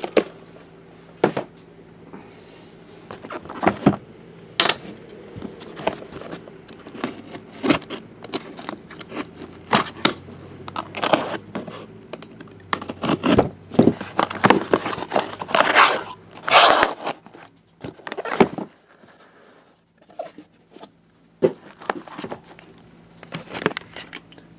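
Cardboard shipping case being opened and handled: packing tape torn, cardboard flaps scraping and knocking, in an irregular run of short tearing, rustling and knocking sounds that thins out near the end.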